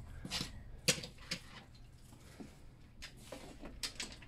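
Faint, scattered clicks and light taps of small die-cast toy cars being handled and set down on an orange plastic race track.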